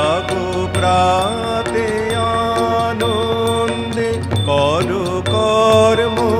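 Tabla being played: a run of ringing, pitched drum strokes, with the bass drum's pitch swooping at the start and again about four and a half seconds in.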